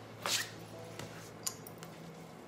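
Handling noise of clothes being folded in a garment folder: fabric and a plastic folding board rustle, with a short swish about a quarter second in and a smaller rustle about halfway through.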